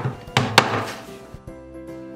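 Two sharp knocks about half a second in, then background music of soft held notes.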